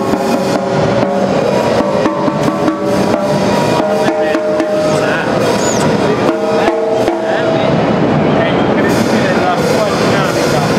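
Drum kit played with sticks: a run of irregular strikes on snare and drums. Behind it are the noise of a busy trade-show hall, background music and people talking.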